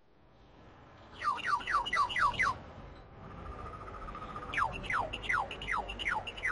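Birdsong: a run of about six quick chirps, each falling in pitch, then a held whistled note, then another run of falling chirps, over a soft steady hiss.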